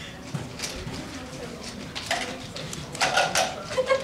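Murmur of several voices in a lecture room, getting louder in the last second.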